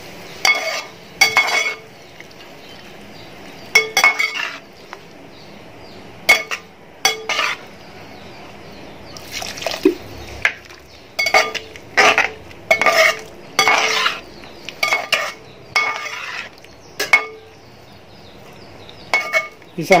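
A metal spatula stirring thick mango pickle in a metal pot, clinking and scraping against the side in irregular clusters of strokes with short pauses, each clink ringing briefly with the pot's tone.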